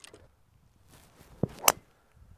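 A golf driver striking a teed-up ball: one sharp, loud crack near the end.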